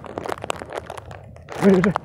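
A run of irregular crunchy clicks, then a person's short spoken sound near the end.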